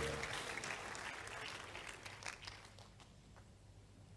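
A congregation's applause dying away, the dense clapping thinning over about three seconds to a few scattered claps.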